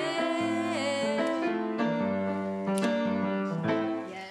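Blüthner grand piano playing a song accompaniment in sustained chords and melody notes.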